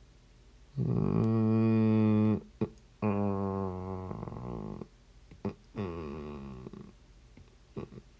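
A man's voice making three long, steady wordless sounds, each lasting one to two seconds, with a few light taps in between.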